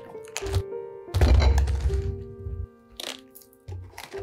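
Large chef's knife cutting through a whole head of white cabbage on a wooden board: crisp crunching cracks as the dense head splits, loudest and longest about a second in, with a few shorter cracks later. Soft music with held notes plays underneath.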